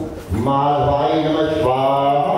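A Hindu priest chanting mantras in a man's voice, holding long steady notes, with a short breath pause just after the start.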